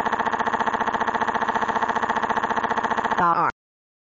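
A cartoon child crying: one long held wail with a fast, even warble, its pitch dropping as it breaks off about three and a half seconds in.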